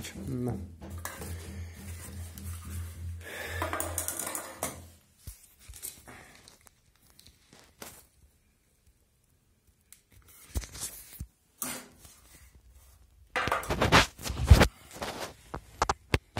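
Plastic spirit level being set down and moved on ceramic floor tiles: scattered light clicks, then a cluster of loud, sharp clacks near the end.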